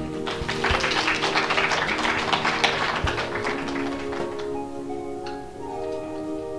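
Audience applauding, dying away after about four seconds, over steady held musical tones.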